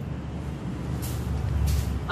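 Low rumbling background noise that grows slowly louder, with two brief soft hisses about a second in and near the end.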